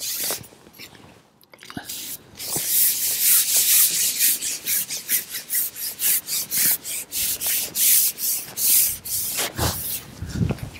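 Fishing pole being shipped out, sliding through the angler's hands in a run of short rasping rubs, a few a second. The rubbing starts about two seconds in and keeps going until just before the end.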